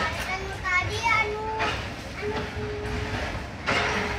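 High voices, a child's among them, talking and calling out inside a moving train carriage, with long drawn-out vocal sounds in the second half, over the train's steady low running rumble.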